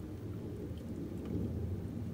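Primary chaincase fluid draining from a 2007 Harley-Davidson Street Glide's primary drain hole in a thin stream into a pan of used oil: a steady, low splashing.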